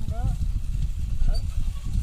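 A man's short shouted calls driving a bullock cart team, about two calls, over a steady low rumble.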